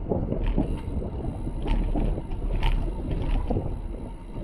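Wind rumbling on an action camera's microphone while cycling, with tyre noise on the asphalt. Scattered sharp clicks and rattles from the bike come about once a second as it rolls over the cracked road surface.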